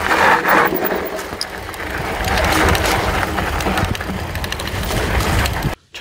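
Mountain bike rolling fast down a dry, loose dirt trail: tyres crunching over soil and grit, with the bike rattling over bumps. The noise stops abruptly near the end.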